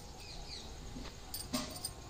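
A hand digging and loosening potting soil in a plastic pot, with soft scrapes and a couple of small knocks. Faint high chirps sound in the background.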